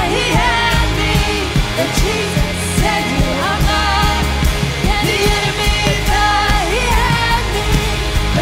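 Live worship band: a woman sings lead into a handheld microphone over electric guitar, bass and drums, with her voice rising and falling in sustained sung phrases.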